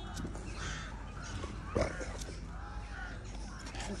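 A crow cawing a few times in the background over a steady low outdoor rumble, with one short, sharp, louder sound near the middle.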